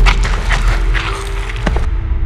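A heavy kick-impact sound effect lands at the very start with a deep boom that rings on, followed by a few sharper cracks, over a sustained film score.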